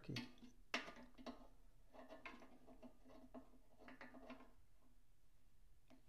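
Faint, scattered light clicks of small metal parts being handled by hand on a phonograph tracking-device bracket, over a faint steady hum.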